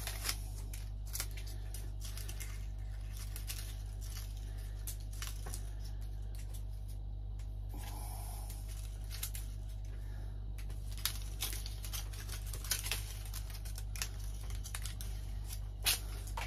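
Dry, dead English oak leaves crackling and tearing as they are pulled off the branches by hand, in short irregular snaps, over a steady low hum.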